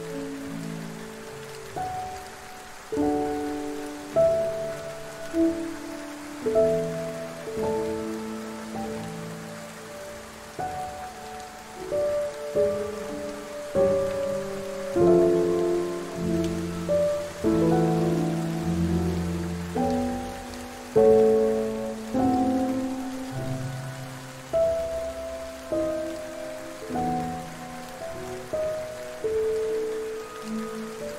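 Soft solo piano playing slow melodic notes, each struck and fading, over a steady hiss of falling rain.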